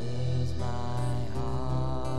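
Live worship band playing a slow song: sustained keyboard and guitar chords over a steady bass, with a wavering held melody line through the middle.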